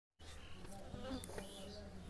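A flying insect buzzing faintly and steadily, with a few faint rustles.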